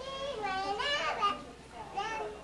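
A young child's high voice for about the first second and a half, its pitch sliding up and down, then quieter.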